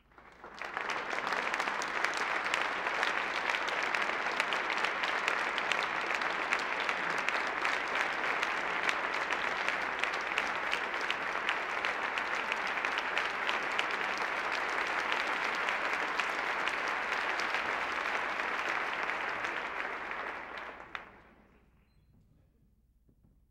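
Concert-hall audience applauding, a dense patter of many hands clapping that swells up in the first second, holds steady, and dies away about a second before the end.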